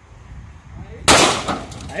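A single shot from a Taurus G2C 9mm pistol about a second in, sharp and loud, with a short echoing tail.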